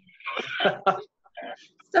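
Speech: a short stretch of untranscribed talk, a pause of about half a second, then a brief vocal sound.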